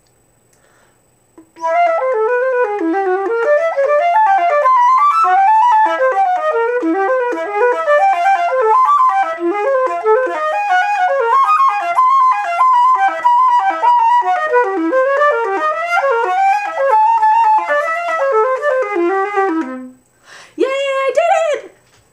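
Flute playing a fast, unbroken run of notes from an etude passage in one breath for about 18 seconds, ending on a low note. A brief burst of voice follows near the end.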